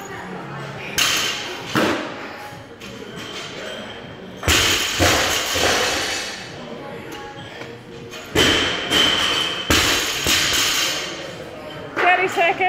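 Loaded barbells with bumper plates dropped onto the rubber gym floor. There are two light knocks about a second in, then three heavy thuds about four and a half, eight and a half and ten seconds in, each dying away over about a second in the large hall.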